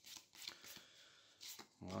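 A small deck of stiff cardboard game cards shuffled by hand: faint rustling with a few light clicks of card against card.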